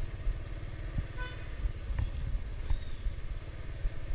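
Honda Biz motorcycle being ridden, its small engine running under a low rumble of wind on the microphone. There is a short horn toot about a second in.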